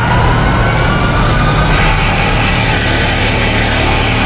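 A motor vehicle engine running steadily and loud, with a higher hiss joining about halfway through.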